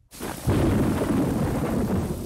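Thunder rumbling over rain, coming in suddenly about half a second in after a brief silence and staying loud.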